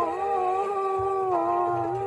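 Song music: a long held sung note, slightly wavering, over a low bass line; the note ends near the end.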